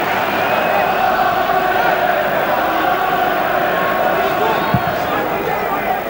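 Stadium crowd of football supporters, a steady din of many voices with held, chant-like notes running through it. There is a short thump about five seconds in.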